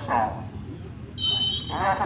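A referee's whistle, one short steady blast of about half a second, a little over a second in.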